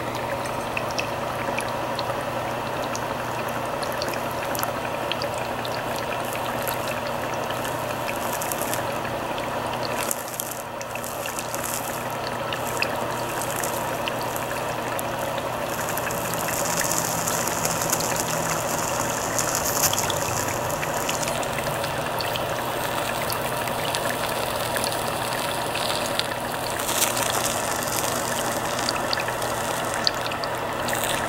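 Steady bubbling and gurgling of water from an HHO wet cell and its bubbler as they make oxyhydrogen gas, with the hiss of a small HHO torch flame playing on ice. A steady low hum runs underneath, and the hiss grows brighter for a few seconds in the middle.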